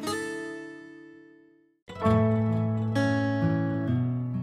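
Background music of plucked notes: a chord rings and dies away to a brief silence just before the middle, then the playing starts again and goes on.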